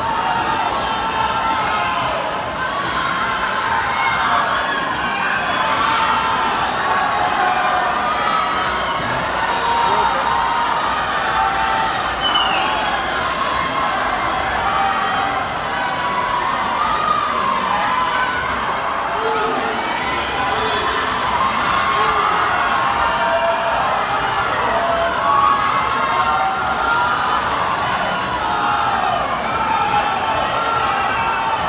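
Crowd of swim-meet spectators cheering and shouting on swimmers during a race, many overlapping voices at a steady level throughout.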